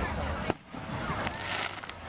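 A firework shell bursting overhead with one sharp bang about half a second in, followed by faint crackling.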